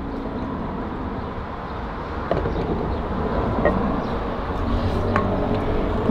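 Sea Foam fuel additive pouring from an upturned can into a car's fuel filler neck, a steady rushing sound, with traffic noise behind it.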